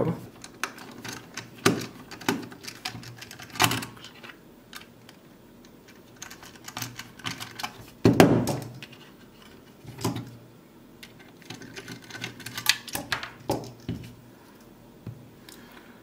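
A screw being worked out of a white plastic smart-plug housing with a forked security screwdriver, and the plug and tool handled on a tabletop: scattered irregular clicks and taps, with the loudest knock about eight seconds in.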